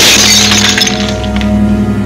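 Background music with a sudden glass-shattering crash at the start, dying away over about a second.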